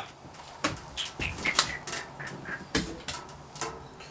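A few light knocks and clicks, spaced irregularly, with a couple of faint short squeaks in between.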